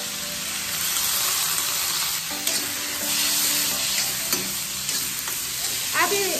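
Vegetables sizzling as they stir-fry on full flame in an iron kadhai, the sizzle growing louder about a second in, with a few sharp clinks of the steel spoon against the pan as they are stirred.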